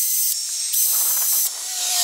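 Cordless drill boring a hole into a wooden deck railing: a high motor whine with hiss, in three runs with two short pauses.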